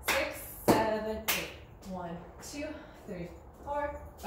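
Three sharp hand claps within the first second and a half, with a woman's voice counting out line-dance steps through the rest.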